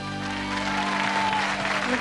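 Concert audience breaking into applause as the song ends, while the final held chord rings underneath and stops just before the end.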